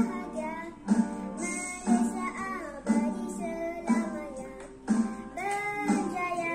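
Children singing a Malay patriotic song over a backing accompaniment with a strong beat about once a second.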